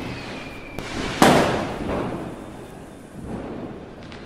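A cinematic boom: a sudden loud impact about a second in that dies away over a couple of seconds, after the song's last held tone fades out.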